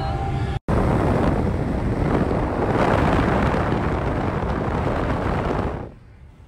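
Steady rush of wind and road noise from a moving car, heavy in the low end and buffeting the microphone. It drops away suddenly near the end.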